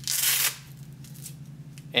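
A brief scratchy rustle, about half a second long, as the fabric webbing of a pedal strap rubs against hands and the plastic pedal while the pedal is turned over; a faint steady hum follows.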